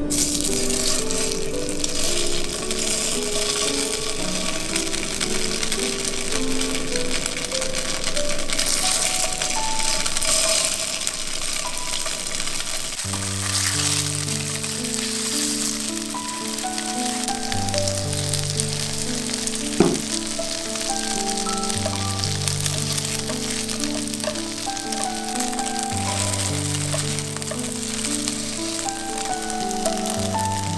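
Slabs of firm tofu frying in a little oil in a non-stick pan: a steady sizzling hiss, under background music whose deeper bass part comes in about halfway through. A single sharp click about two-thirds of the way in.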